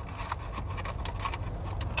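Steady low rumble inside a car's cabin, with small clicks and rustles as a sandwich is bitten into and handled, and a sharp click near the end.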